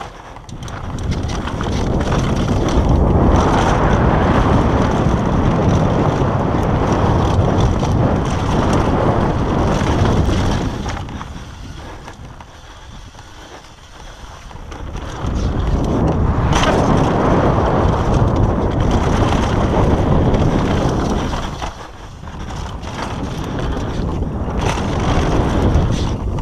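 Wind rushing over a helmet- or bar-mounted action camera's microphone, with knobby mountain-bike tyres rolling on a dirt trail during a fast downhill descent. It is loud for most of the first ten seconds, drops away for a few seconds, then comes back loud, with scattered clicks and rattles from the bike.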